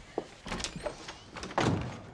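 A door being handled and shut: a few short clicks and knocks, then a heavier thud about one and a half seconds in.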